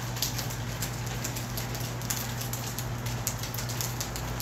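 Light rain pattering in the background: a soft, irregular crackle of drops, over a steady low hum.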